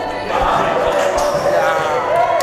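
Dull thuds of players' boots on a hard indoor floor during a team warm-up, with the team's voices around them.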